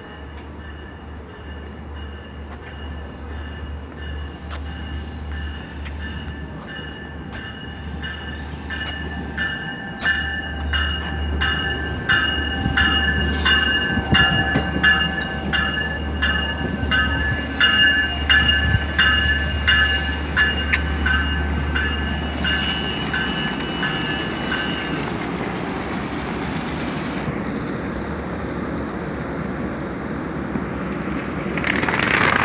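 LIRR diesel push-pull commuter train, a C3 bilevel cab car leading and a DE30AC locomotive at the rear, pulling into the station and stopping. A rhythmic ringing of about two strokes a second grows louder over a rising rumble and stops as the train halts, leaving the steady hum of the standing train.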